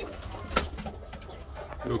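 Chickens in the coop making soft, low calls, with one sharp click about half a second in.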